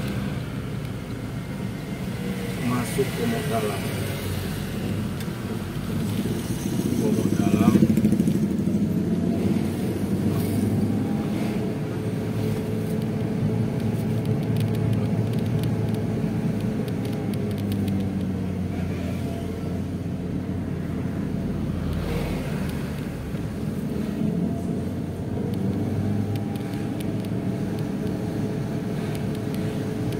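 Steady engine and road noise heard from inside a moving car driving through town traffic, with passing motorcycles. Indistinct voice-like sounds come through in the first several seconds, and the noise swells briefly about eight seconds in.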